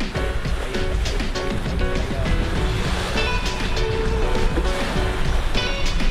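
Background music with held notes, playing over a steady low rush of water along a moving sailboat's hull.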